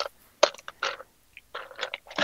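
Small plastic spray-paint nozzle caps being picked up and handled close to the microphone, making several short crunchy, scraping noises.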